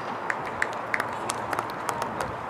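A few spectators clapping: scattered, irregular hand claps.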